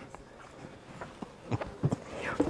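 Several soft footsteps and light knocks over the faint murmur of a large hall, as someone walks off with a handheld camera.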